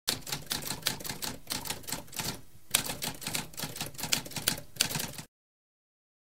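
Typewriter keys clacking in rapid typing, with a short pause near the middle; the typing stops about five seconds in.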